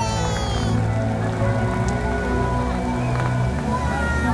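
Music played through a fountain show's loudspeakers, with sustained held notes, over the steady hiss of the fountain's water jets and their spray falling back into the pool.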